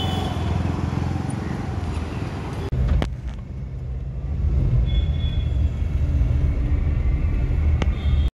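Road traffic: a steady low rumble of vehicle engines and tyres, broken briefly about three seconds in.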